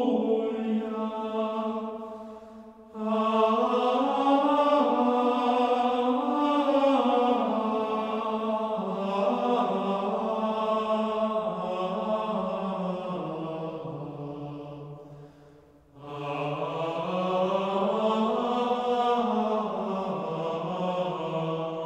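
Choir singing a slow sacred Latin piece in several sustained voices. A phrase dies away about three seconds in and again about sixteen seconds in, each followed at once by a new entry.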